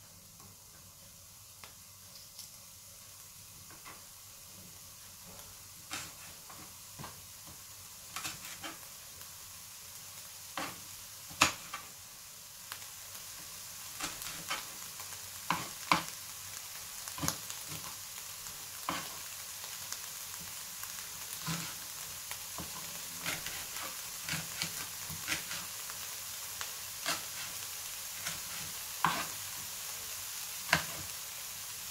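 Diced red onion sizzling in a frying pan as the pan heats up: a steady hiss that grows louder, with scattered sharp pops and crackles that come more often in the second half.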